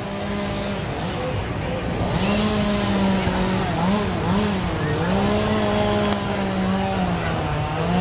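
An engine running with a steady hum, its pitch dipping and rising again a few times around the middle, with a rushing hiss coming in about two seconds in.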